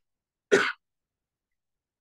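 A man clears his throat once, a short, sharp sound about half a second in.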